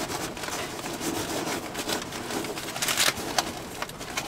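Plastic bubble wrap and loose packing peanuts crinkling and rustling as a wrapped item is pulled out of a cardboard shipping box, with a louder crackle about three seconds in.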